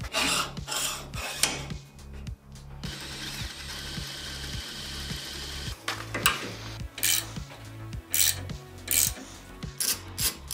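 Metal rubbing and scraping as bearing collars and a brake hub are slid and fitted on a steel go-kart axle, over background music. There is a steady hiss in the middle, and short scrapes and clicks toward the end.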